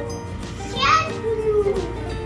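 Background children's music with a short, high twinkling chime effect just after the start, and a child's brief voice sound about a second in that rises and then falls in pitch.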